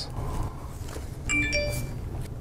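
A short bright electronic chime of several tones about a second and a half in.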